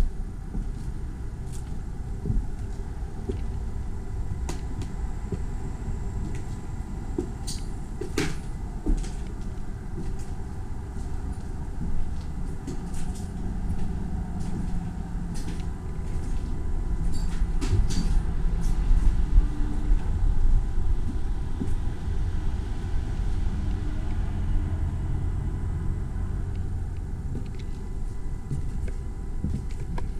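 Footsteps and debris crunching on fire-damaged floors and stairs over the low rumble of camera handling, with scattered sharp knocks and creaks, busiest in the middle stretch.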